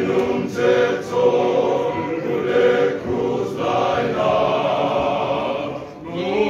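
Male voice choir singing in several-part harmony, holding long chords, with a short drop in loudness just before the end as a phrase closes.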